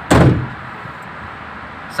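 A truck door slamming shut once, a single loud thump just after the start that dies away quickly, followed by steady low cabin noise.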